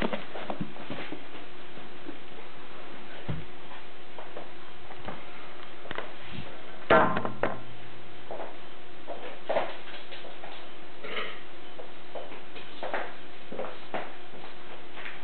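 Scattered knocks, clicks and rustles from a taped cardboard box and the camera being handled, over a steady faint hum. The loudest knock comes about seven seconds in.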